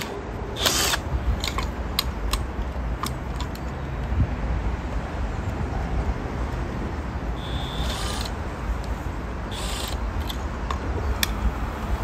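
Scattered small clicks and rattles of an LED floodlight being handled and angled on its metal wall bracket, over a steady low rumble, with a few brief rasping bursts in between.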